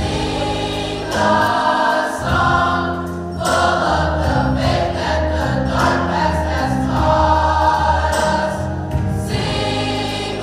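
A choir singing a slow gospel-style song in held, changing chords over a low bass line.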